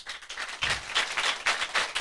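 Audience applauding with many hands clapping, starting at once and growing louder about half a second in.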